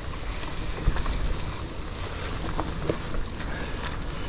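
Mountain bike tyres rolling over dry, crushed leaf litter on a dirt trail: a steady rustling crunch with the odd click, under a low wind rumble on the microphone.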